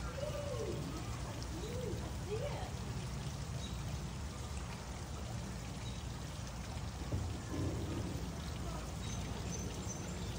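Steady hiss of falling or running water, with faint distant voices in the first couple of seconds.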